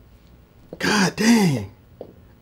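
A man's short, wordless vocal sound in two loud, breathy parts, each falling in pitch, about a second in.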